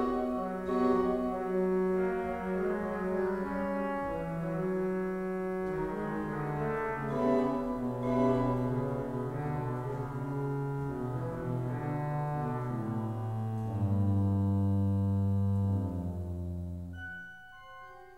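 Pipe organ playing a sustained, many-voiced passage whose bass line steps downward and settles on a long low note. The sound then falls away to a much softer held chord near the end.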